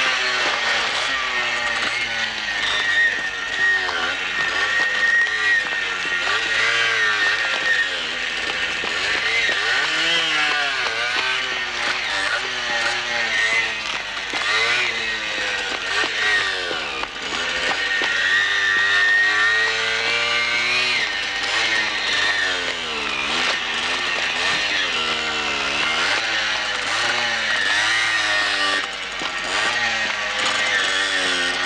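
A motorcycle engine being revved up and down over and over, its pitch rising and falling every second or two, with music underneath.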